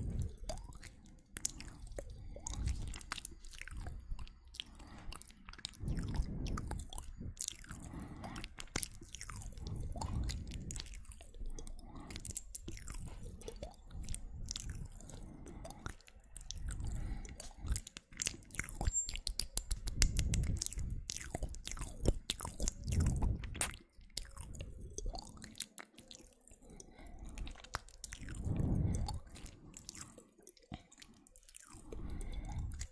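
ASMR mouth sounds made right against a microphone: lip and tongue clicks, smacks and pops in irregular clusters, with soft low bumps every few seconds.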